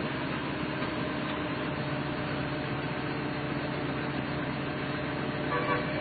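An engine running steadily under a constant hiss, with a brief faint voice-like sound near the end.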